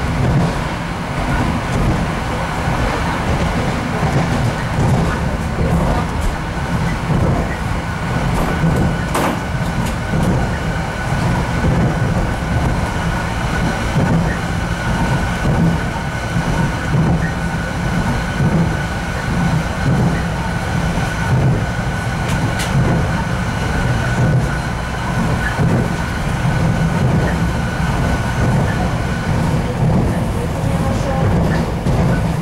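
An RA2 diesel railbus running at speed, heard from inside the passenger saloon: a steady low rumble of engine and wheels on the rails with a thin steady whine over it. A couple of sharp clicks come through, one about nine seconds in and one past twenty-two seconds.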